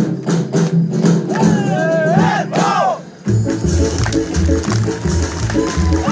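Bulgarian folk dance music with a strong driving beat and loud drawn-out shouts from the dancers about halfway through. It breaks off briefly and a new tune with a deep pulsing beat starts.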